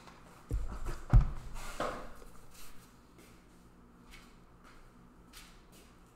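Low thumps and rustling as a person gets up from the desk and moves off, the loudest thump about a second in. After that, faint scattered clicks over quiet room tone.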